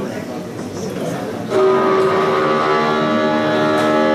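A loud, steady horn sounding several tones at once, starting about a second and a half in and held without changing pitch.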